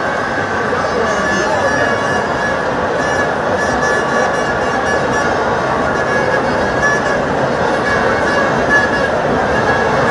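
A large football stadium crowd making a steady din of many voices, with horns blowing through it.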